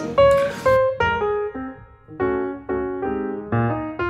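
Background piano music: a few single notes, then soft repeated chords from about two seconds in.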